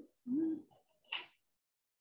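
A short, low hummed "mm" from a person's voice, followed about a second in by a brief breathy hiss.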